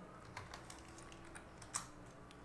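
Faint computer keyboard typing: a handful of uneven key presses, with one louder press near the end, as a node name is typed into a software search menu.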